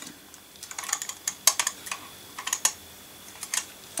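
Diecast toy vehicles being handled and knocked together, with a run of small, irregular clicks and taps.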